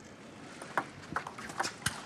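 Table tennis ball in a rally: five or six sharp ticks, uneven in spacing, from the ball bouncing on the table and being struck by the rackets during a serve and return. They come in the second half.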